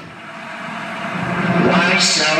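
A swell of noise in the dance routine's backing track, building steadily louder over the two seconds after the music cuts out, like a transition effect in a dance mix.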